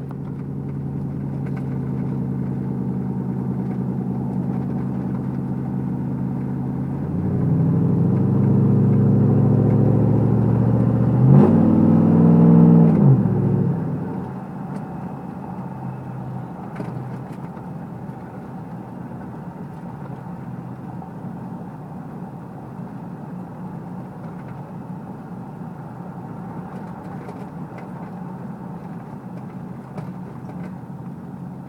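A car engine heard from inside the cabin while driving. About seven seconds in it grows louder under acceleration, and its pitch climbs to a peak a few seconds later. It then drops away to a quieter, steady cruise with road noise.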